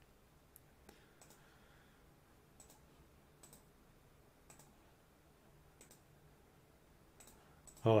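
Faint, scattered computer mouse clicks, spaced irregularly about a second apart, over a quiet steady room hum.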